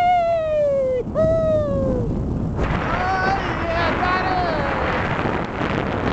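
A person whooping twice, each a long yell of about a second falling in pitch. From about two and a half seconds in, a loud rushing noise takes over, with fainter whoops wavering through it.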